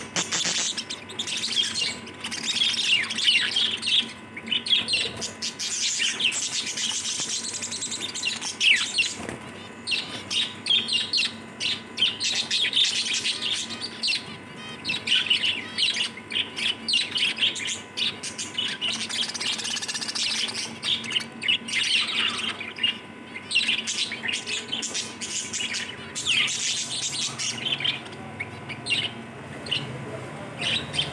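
Many small birds chirping and twittering busily and without pause, with quick rising and falling notes.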